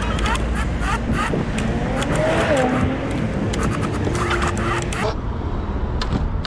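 Wind rushing on the microphone and road rumble while riding an electric scooter through city traffic, with scattered knocks and rattles. The rushing drops away suddenly about five seconds in as the scooter slows.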